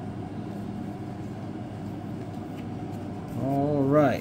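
Steady background room noise with no distinct events; near the end a man's voice briefly sounds.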